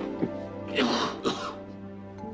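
A man lets out two short, rough coughs, about a second in and again half a second later, while hunched over and clutching his side. Soft instrumental background music runs underneath.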